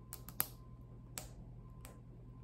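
Knife blade scoring the hard outer shell of a raw chestnut: a few sharp clicks and cracks, the loudest about half a second in.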